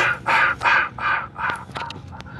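A bird cawing in a quick series of harsh calls, about three a second, with a few sharp clicks near the end.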